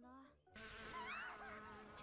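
Faint insect buzzing in a forest ambience from an animated series' soundtrack, starting about half a second in, with a short pitched glide about a second in.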